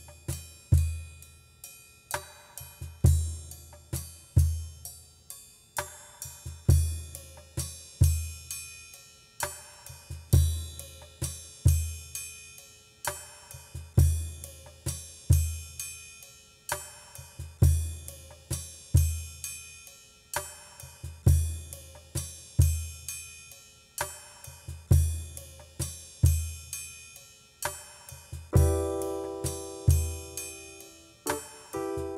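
A slow, steady drum beat of kick drum, snare and hi-hat, the pattern repeating about every four seconds. Sustained keyboard notes come in near the end.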